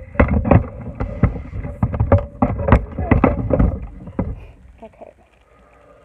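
Loud clunking knocks, several a second, while a package of papers is handled over a wooden tabletop, dying away to faint rustling after about four and a half seconds.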